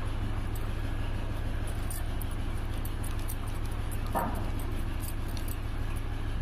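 Steady low background hum with faint rustling of cloth being folded by hand around a bead. About four seconds in comes one short falling sound.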